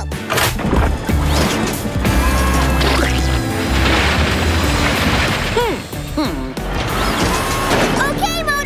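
Cartoon sound effects of a cement-mixer truck: a lever pulled in the cab, then a long rushing pour of concrete over a low rumble, strongest in the middle, with background music.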